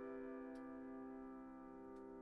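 Faint, fading tail of a sustained piano chord from the background music, dying away slowly, with a small click about half a second in.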